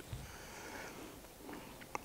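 A pause in speech: a quiet room with a faint breath through the nose, and a couple of soft ticks near the end.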